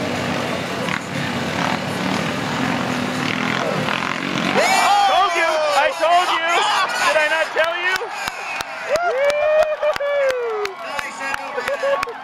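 Several Yamaha Rhino side-by-sides racing on a dirt track, a dense steady engine drone for the first four to five seconds. Then excited shouts and whoops from the spectators take over as one Rhino flips end over end, with sharp clicks through the last few seconds.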